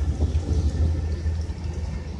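Water from a garden hose pouring onto a car door panel, heard faintly under a loud, unsteady low rumble.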